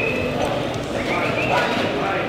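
Hoofbeats of a reining horse loping on the arena's dirt footing, with a voice heard over them.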